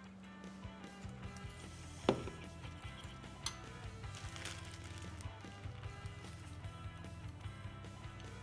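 A hand pepper mill grinding over a bowl of sauce: a fine, rapid ratcheting crackle, thickest in the second half, over steady background music. There is one sharp clink about two seconds in.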